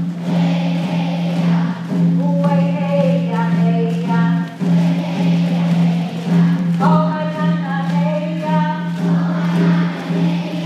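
A woman singing a chant in long phrases on a steady low note, with short breaks between phrases.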